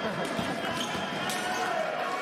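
Fencers' footwork on the piste: a few sharp footfalls as they step forward, over background voices.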